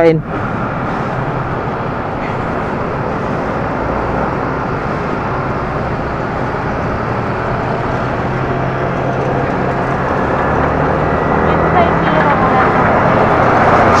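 Wind rushing over the microphone of a moving motorcycle, with the Yamaha Sniper 155 VVA's single-cylinder engine running steadily beneath it, while riding in traffic. The rush grows slowly louder toward the end.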